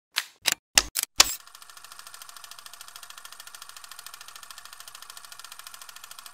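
An intro sound effect: five sharp clacks in the first second or so, then a steady, fast, even ticking.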